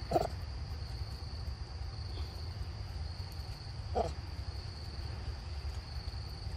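Two short, low grunts from a macaque, about four seconds apart, over a steady high-pitched insect drone.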